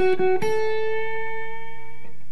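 Fender Stratocaster electric guitar: a few quick repeated picked notes, then a higher note on the sixth fret of the high E string, pushed up in a slight one-finger bend just short of sounding out of tune and held ringing.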